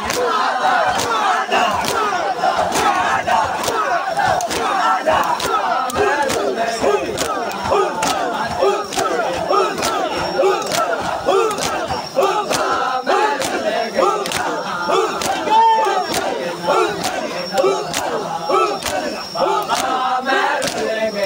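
A dense crowd of men shouting and chanting together in mourning. Sharp slaps of hands striking chests (matam) cut through about once a second.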